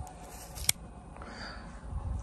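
A quiet pause with a faint low rumble and a single sharp click about two-thirds of a second in.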